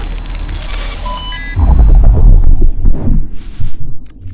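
Intro/outro logo-animation sound effects: a hissing electronic sweep, a few short beeping tones about a second in, then a loud, deep bass rumble from about halfway that dies away near the end.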